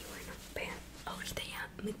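A woman's soft whispered speech, quiet and broken, with her words picking up near the end.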